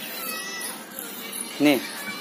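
A toddler's short, high-pitched vocal exclamation ("Ne"), rising then falling, about one and a half seconds in.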